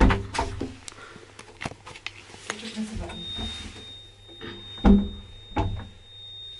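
Thuds and clicks from a small old lift's door and car, then about halfway a thin, steady high-pitched tone comes on and holds. The lift stays put and doesn't start.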